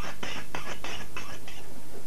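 Kitchen knife being sharpened before carving meat: quick, even scraping strokes of the blade, about four to five a second.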